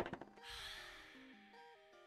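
Quiet background music with a repeating stepped melody. Right at the start comes a short, sharp clatter: a plastic marker being put down on the cutting mat.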